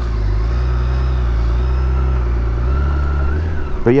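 BMW K1600GTL's inline-six engine running as the bike rolls along at low speed: a steady low drone that rises slightly about three seconds in, then eases off just before the end.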